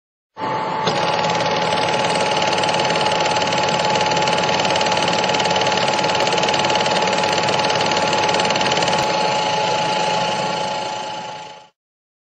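A loud, steady mechanical whirring clatter with a constant high hum through it. It starts abruptly and fades out near the end.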